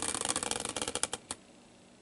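Hand-spun caster wheel used as a prize wheel, clicking as it coasts down: the clicks start rapid, slow, and stop about a second and a third in as the wheel comes to rest.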